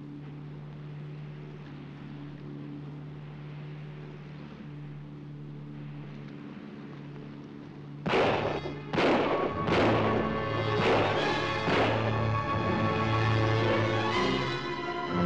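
A steady low hum, then about eight seconds in a dramatic orchestral film score cuts in with five loud accented hits about a second apart, continuing as loud music.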